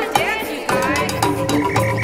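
Percussion-band music with drums and steel pans. In the first part there are short pitched sliding sounds that bend up and down, with a croaking quality.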